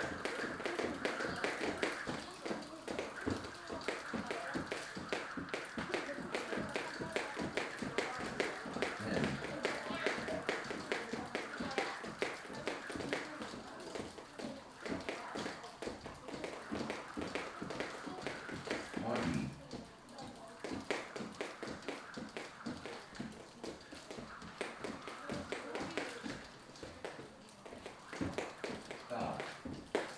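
Two speed jump ropes whipping round and ticking on the gym floor in fast double-unders: a rapid, steady patter of many sharp ticks a second.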